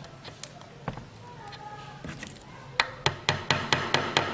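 Pins being pressed into a dissecting board to hold open a dissected fish, heard as a few faint clicks and then, in the last second or so, a quick run of sharp taps about four or five a second.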